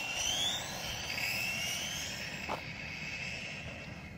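Hobao EPX electric RC car's brushless motor whining high at speed, falling in pitch and fading as the car runs away.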